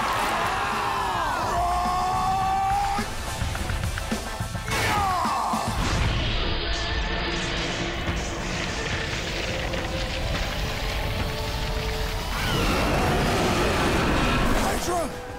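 Cartoon action soundtrack: driving background music under fight sound effects, with sweeping swooshes in the first few seconds and again about five seconds in, and crashing impacts. Near the end come loud creature cries.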